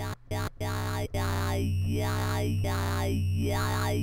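Dubstep 'talking' wobble bass from Ableton Live's Operator synth: a square wave through a resonant low SVF filter swept by an LFO, with Redux downsampling giving it a vowel-like, mouth-like tone. For about the first second it plays short repeated notes, about four a second. Then a held note wobbles open and shut in slow, even sweeps while the resonance is being turned down a little, softening the sharpness of the 'talking' formant.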